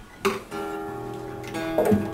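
Acoustic guitar strummed: a chord struck about a quarter second in rings on steadily, then is struck again near the end.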